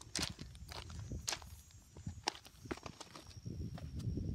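Footsteps crunching on loose gravel, irregular steps a few times a second.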